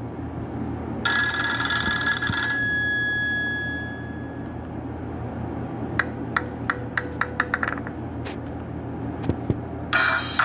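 Nokia 5228 ringtones and alert tones played through a Nokia 130's small loudspeaker: a bright chime chord about a second in that fades out over a few seconds, then a quick run of short beeps. A new tone starts right at the end.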